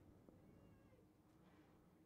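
Near silence: faint background sound only.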